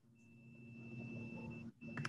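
A faint, steady, high-pitched electronic tone lasting about a second and a half, with a low hum under it, cutting off shortly before the end.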